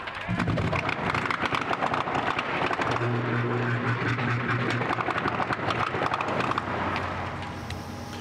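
A large building fire burning hard: a steady rushing noise thick with rapid crackling, with a low hum joining in from about three to five and a half seconds in.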